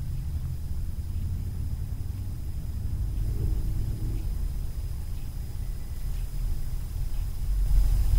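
A steady low rumble of background noise with no speech, the same rumble that runs under the talk on either side.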